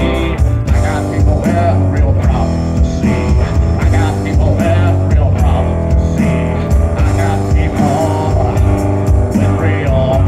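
Live rock band playing: electric guitar over upright bass and drum kit, with a steady pulsing low end.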